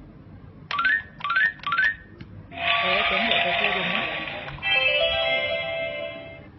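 Winfun crawling crocodile toy playing its electronic game sounds: three short beeps, each with a rising glide, then a loud noisy sound effect lasting about two seconds, then a short electronic jingle.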